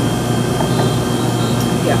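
Steady mechanical room hum and hiss, with a thin high-pitched whine held level throughout, like running air conditioning.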